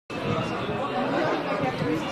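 Chatter of a group of people talking at once, overlapping voices with no single voice standing out.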